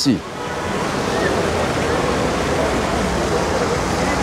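Steady, even rushing noise that swells over the first second and then holds, with faint distant voices under it.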